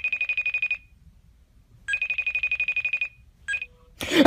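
FaceTime call ringing out on a phone: two rings, each about a second of rapidly pulsing tone, with a second's pause between, then a brief tone near the end as the call is answered.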